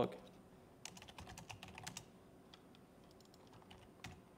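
Faint laptop keyboard typing: a quick run of keystrokes about a second in, then a few scattered taps as a terminal command is entered.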